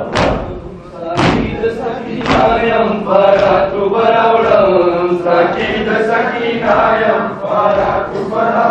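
Mourners' open-hand chest-beating (matam) lands in hard unison thumps about once a second. A few seconds in, a man's mourning chant over the microphones takes over, with the thumps going on more faintly beneath it.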